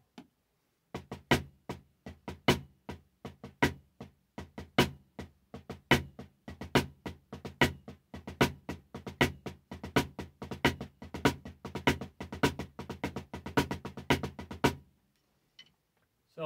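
Drumsticks playing a drag triplet rudiment on a drum: a steady run of strokes with doubled diddle strokes, regular louder accented strokes standing out among quieter ones. The pattern starts about a second in and stops about a second before the end.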